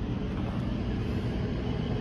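Steady low background rumble, an even noise with no distinct events.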